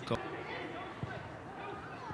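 Low-level football-ground ambience: distant voices over a steady background hum, with a short sharp thud just after the start and a fainter one about a second in.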